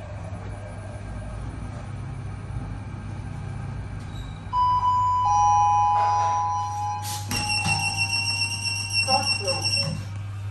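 Steady low hum of a modernized passenger lift car travelling down. About halfway an electronic chime sounds, a high tone stepping down to a lower one. A louder electronic signal of several high tones follows in the last few seconds as the car arrives.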